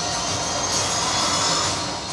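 Movie trailer soundtrack: a loud, dense wash of music and noisy sound effects that cuts off at the end as the picture goes to black.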